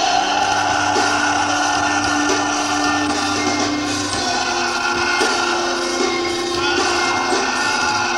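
Live rock band playing: electric guitar and drums, with a man singing into the microphone.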